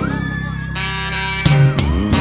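Live forró band music: the drums drop out and a steady chord is held for about a second and a half, then the full band comes back in with the beat.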